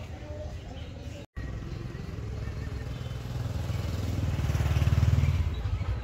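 Low engine rumble of a passing motor vehicle, swelling to its loudest near the end and then easing off. The audio drops out completely for a moment about a second in.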